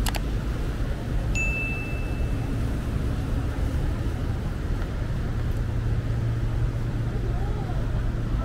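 Outdoor ambience: a steady low rumble with faint voices. A single high ding rings for about a second, starting just over a second in.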